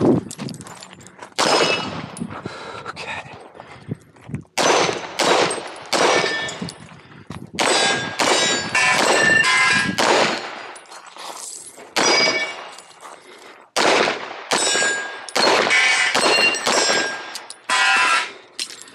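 A string of handgun shots, some in quick pairs and clusters about half a second apart and some after pauses of a second or more, with metallic ringing after several of them, typical of hits on steel targets.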